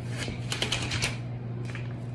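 A cat scrambling and twisting on a tile floor: a quick burst of clicking and scrabbling about half a second in, over a steady low hum.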